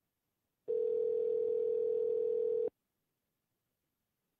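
Telephone ringback tone heard over the phone line: one steady ring tone lasting about two seconds, starting just under a second in, as the outgoing call rings at the other end.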